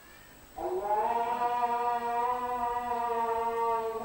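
A voice starts a long, held chanted note about half a second in, sliding up briefly and then sustained steadily: the opening of Islamic devotional chanting (swalath).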